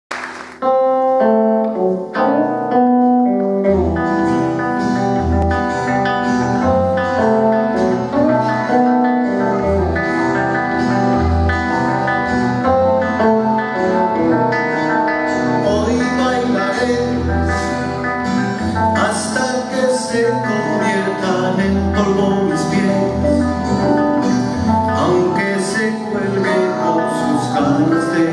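Live band music from guitars and accordion, with bass notes coming in about four seconds in.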